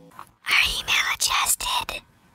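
A loud, close whispered voice: about a second and a half of breathy whispered syllables starting about half a second in.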